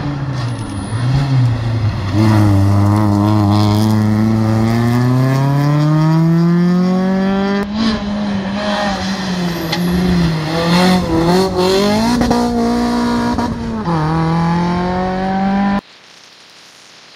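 Rally car engines revving hard through a hairpin. One car's engine note climbs steadily as it accelerates away. After a break, a second car comes through with quick rises and dips in pitch as it lifts off and changes gear, and the sound cuts off suddenly near the end.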